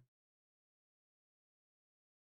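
Silence: the sound cuts to nothing.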